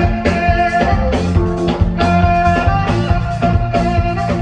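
Live band music: a saxophone holding and playing lead notes over a drum kit and bass with a steady beat.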